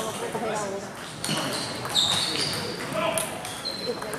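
Celluloid-type table tennis balls clicking off paddles and tables in a series of sharp ticks, over a background of voices.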